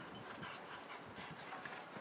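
Faint hoofbeats of a horse cantering on sand arena footing, soft and irregular, over a low outdoor background hiss.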